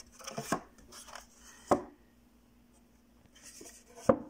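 Wooden-framed paintings handled in a stack: frames rubbing and scraping against each other in the first half second, a sharp wooden knock a little under two seconds in, and a softer rustle near the end.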